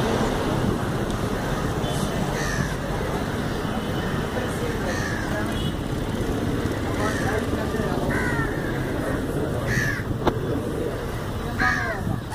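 Crows cawing, about six short calls spaced a second or two apart, over a steady background noise.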